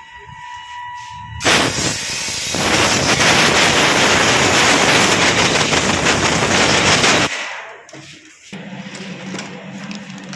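Compressed-air blow gun blasting into the open clutch-side crankcase of a motorcycle engine to clean it. It is a loud, rough hiss that starts suddenly about a second and a half in and cuts off about six seconds later. A steady low hum follows near the end.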